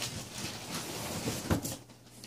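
Large cardboard boxes being handled and shifted on a wooden table, with faint rustling and clicks and one sharp knock about one and a half seconds in.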